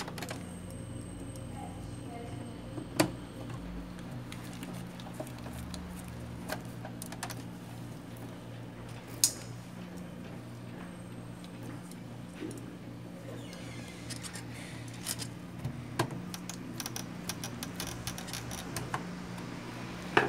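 Screwdriver work on the opened Epson L120 inkjet printer's plastic and metal chassis: scattered small clicks and taps with a few sharper knocks, over a steady low hum. The clicking grows busier in the last few seconds.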